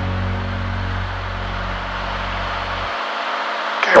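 Steady in-flight cabin noise of a Cirrus SR20 single-engine light aircraft: engine and propeller drone with wind rush, a low hum underneath dropping out about three seconds in.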